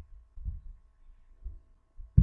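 Quiet background on a narrator's microphone: a faint steady hum with a few soft, low thumps.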